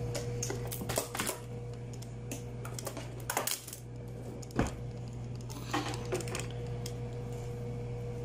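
Scattered light clicks and knocks of objects being handled on a kitchen counter, irregular and a second or so apart, over a steady low hum.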